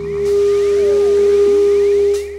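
Live jam music dominated by a loud, steady, pure electronic tone held at one pitch, with hiss above it and a short sliding note about halfway through; the tone stops just after the end.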